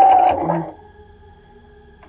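Electric sewing machine sewing a small straight stitch, a steady motor whine with even needle clicks, stopping about half a second in. A faint steady hum remains after it stops.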